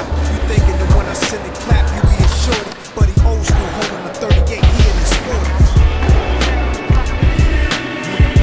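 Hip-hop backing track with a heavy, rhythmic bass line and drums, mixed with skateboard sounds: wheels rolling on hard ground and sharp clacks of the board on pops and landings.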